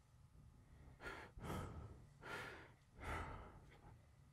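A person sighing and breathing heavily: four breathy exhalations starting about a second in, over a faint low hum.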